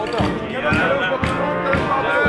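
Brass band music with a steady drum beat, about two beats a second, mixed with voices from the crowd.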